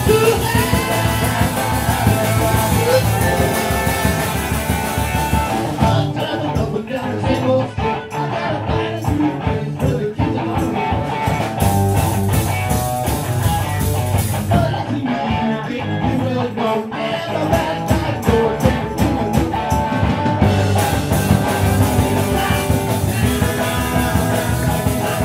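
Live garage rock band playing a song with electric guitar, bass guitar and drums. The bright top end drops away for a stretch in the middle, from about six seconds in to about twenty, before coming back.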